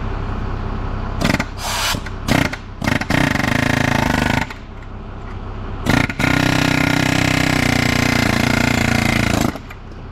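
Pneumatic air hammer working on a transmission countershaft bearing. It goes in several short bursts, then runs longer bursts of about one and a half seconds and about three and a half seconds.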